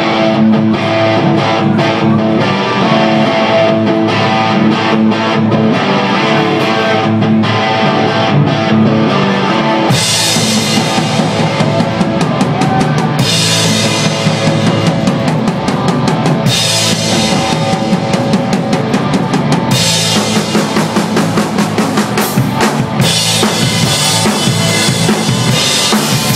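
Live rock band playing: electric guitar over a drum kit, with the Zildjian crash and ride cymbals coming in loud about ten seconds in as the full band drives on.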